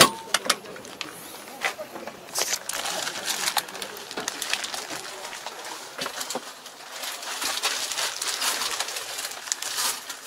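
A sharp click right at the start, then scattered clicks, knocks and rustles over a steady background hiss, with voices in the background.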